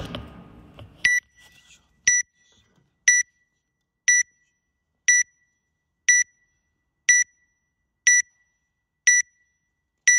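Electronic timer beeping a countdown: short, identical high beeps, one a second, nine of them, counting down to the start of a workout.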